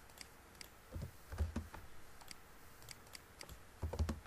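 Computer keyboard keystrokes and mouse clicks: scattered sharp clicks, with a few heavier thumping key presses about a second in, around a second and a half, and near the end.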